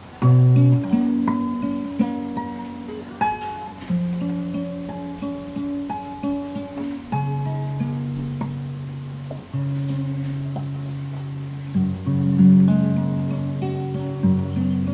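Solo nylon-string classical guitar played fingerstyle: a melody of plucked notes over ringing bass notes, opening with a loud plucked chord just after the start.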